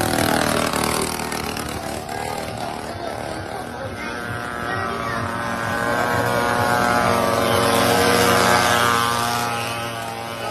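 Small mini-motorbike engines running, their pitch wavering up and down with the throttle. The sound grows louder past the middle and eases near the end.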